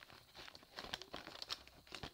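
Pen scratching on paper in quick irregular strokes, crossing out written items on a list, with the paper crinkling as it is handled.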